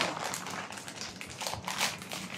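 Clear plastic packaging rustling, with a few light taps and knocks as wrapped items are handled out of a cardboard box.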